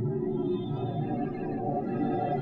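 Early 1970s analogue electronic music from a Buchla synthesizer: a dense cluster of sustained, wavering tones layered over a low drone, running steadily.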